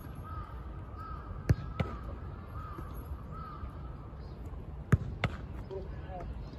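Sharp thuds of a soccer ball being struck and handled during goalkeeper drills, in two pairs about a third of a second apart, one pair near the middle and one near the end. Behind them, a faint call repeats at an even pace through the first half, like a crow cawing.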